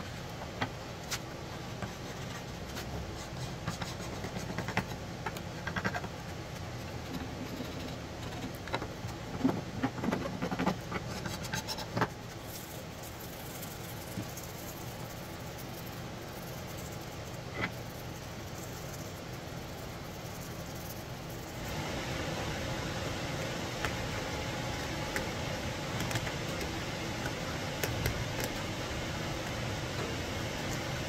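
A hand scraper scraping chemically softened old finish off a carved wooden trim piece: scattered scratches and light taps, mostly in the first half, over a steady low background hum that gets a little louder about two-thirds of the way in.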